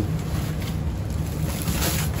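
Wind buffeting the microphone: an uneven low rumble, with a faint rustle of a woven plastic sack being handled near the end.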